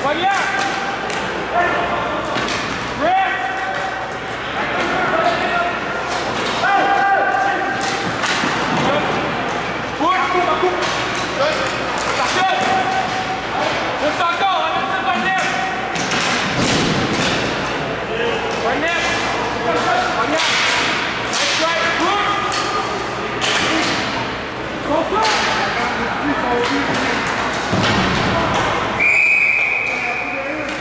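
Ball hockey play: sharp clacks of sticks on the ball and on each other, and knocks against the boards, with players shouting to each other. A referee's whistle blows once near the end, a single steady blast lasting about a second.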